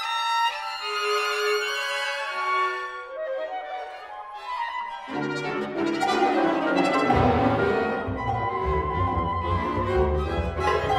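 Solo violin playing high, singing lines with vibrato over a chamber orchestra. About halfway through, the lower strings come in, and a deep bass enters a couple of seconds later, filling out the orchestra.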